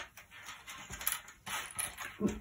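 Cardboard jigsaw puzzle pieces clicking and rattling against each other and the tabletop as hands sift and slide them apart, a run of small irregular clicks.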